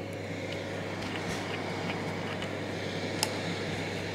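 Steady low background hum under faint even outdoor noise, with a single light click about three seconds in.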